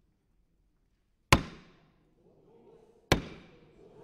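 Wooden gavel struck twice on its sound block, sharp knocks about two seconds apart, each followed by a short echo. The strikes call the sitting to order.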